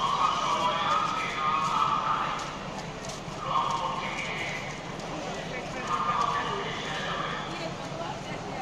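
Voices of a crowd of people talking and calling out, in patches of about a second with short lulls between, over a steady background hum.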